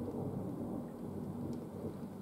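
Low rolling rumble of thunder with rain falling.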